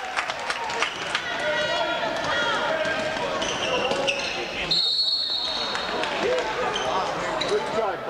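Basketball game in a gym: the ball dribbling on the hardwood under crowd shouting, then a single short referee's whistle blast about five seconds in, stopping play after a scramble for a loose ball.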